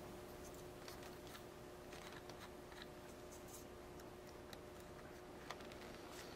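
Faint, scattered small ticks and rustles of fingers handling heat-shrink tubing and speaker wire, over a faint steady hum.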